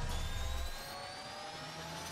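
Synthesized rising whoosh of an animated intro, with several tones gliding slowly upward like a jet whine. A low rumble underneath drops out about two-thirds of a second in.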